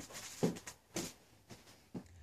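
Footsteps on a hard indoor floor: a few short knocks about two a second as a person walks briskly away.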